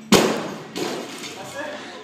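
A 95 kg barbell loaded with bumper plates dropped from overhead after a clean and jerk, landing on the rubber gym floor with a loud crash, then a second, smaller thud as it bounces.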